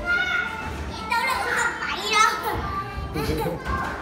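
Young children chattering and playing in a large indoor play hall, their high voices overlapping with the general hubbub of the room.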